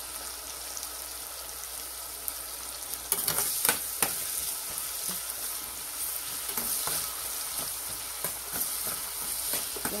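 Chopped onions and whole spices sizzling in hot oil and ghee in a pressure cooker, stirred with a metal slotted spoon. From about three seconds in, the spoon clicks and scrapes against the pot over the steady sizzle.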